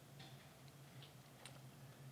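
Near silence: a faint steady low hum with a few faint computer mouse clicks.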